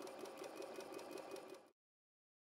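Faint, rapid mechanical rattle of a banknote counting machine riffling through a stack of $100 bills, cutting off suddenly near the end.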